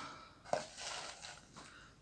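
A plastic tub being picked up and handled, with a faint knock about half a second in and soft rubbing after it.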